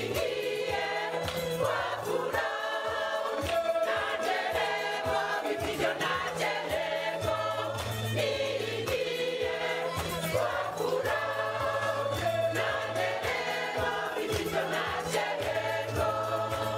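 A church choir singing a hymn in parts, with sustained low bass notes and a steady percussive beat underneath.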